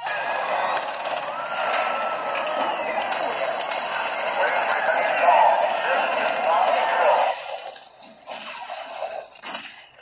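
Loud, dense action-film soundtrack of blasts and crashes mixed with music and voices, played through a laptop's small speakers so it sounds thin, with almost no bass. It eases off about seven seconds in, leaving a couple of short hits.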